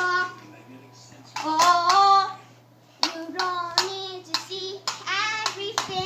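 A young child singing in short wordless phrases, with sharp clicks or taps in between.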